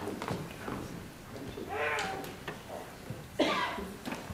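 Pause in a hall with two short human vocal sounds: one about two seconds in and a louder, abrupt one near the end, such as a cough or a brief call from someone in the room.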